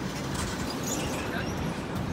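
City street traffic: a steady low rumble of vehicles, with a few faint high squeaks about half a second to a second and a half in.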